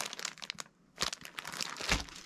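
Plastic crinkling as hands handle a clear poly bag holding a plush toy and rummage in a black plastic garbage bag. The crinkles come in a crackly run with a short pause in the middle and a soft thump near the end.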